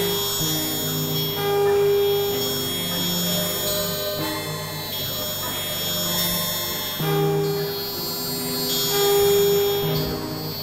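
Electronic synthesizer music: overlapping held tones that shift pitch every second or so, swelling louder now and then, in a slow drone-like texture.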